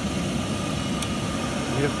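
Worcester Heatslave 20/25 oil boiler's burner running steadily as it starts up after its fuel line has been bled of air, just before it fires. A single sharp click about a second in.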